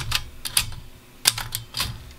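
Maritsa 11 ultra-portable manual typewriter being typed on: about half a dozen separate key strikes, typebars hitting the platen at an uneven pace.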